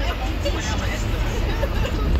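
Indistinct chatter of several overlapping voices over the steady low rumble of a moving car.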